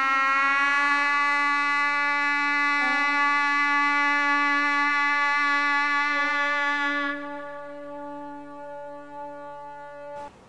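A sustained synthesizer chord, a steady electronic drone made of many held tones, which drops to a lower level about seven seconds in.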